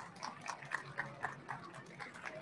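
Faint applause from a small audience: a few people clapping at about four claps a second.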